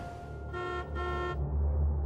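A car horn honking twice, two short toots about half a second apart, over a low, steady engine rumble.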